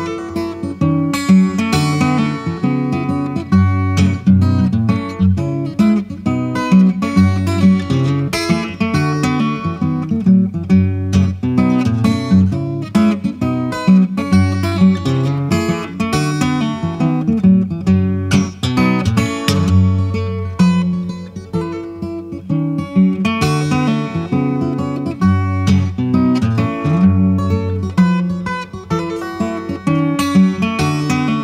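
Acoustic guitar instrumental played fingerstyle, with steady picked bass notes running under a higher melody line.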